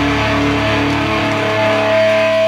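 Live rock band playing an instrumental passage with no singing: electric guitars ring out held, steady chords over bass. The deepest bass notes drop out a little past halfway.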